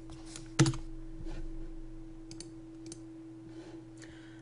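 Computer keyboard keys clicking as a filename is typed. One louder keystroke comes about half a second in, followed by a few scattered key clicks.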